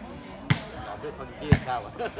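A volleyball being struck by hand twice, about a second apart, the second hit sharper and louder, with spectators' voices around it.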